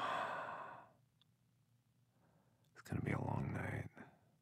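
A person's sighs: a long breathy exhale at the start, fading within a second, then a louder, voiced sigh about three seconds in.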